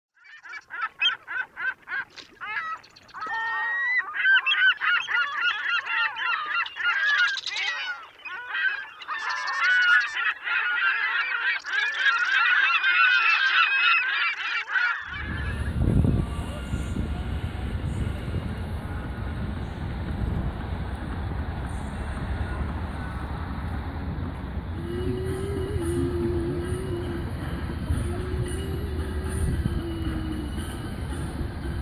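A flock of black-headed gulls calling, many short harsh cries in quick overlapping succession for about fifteen seconds. Then the calls stop abruptly and a steady low outdoor rumble takes over, with a faint wavering tone in the last few seconds.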